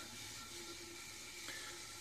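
Faint steady whir of a waste-oil centrifuge bowl coasting down, with the spinning wall of oil collapsing and washing down inside it. A light click about one and a half seconds in.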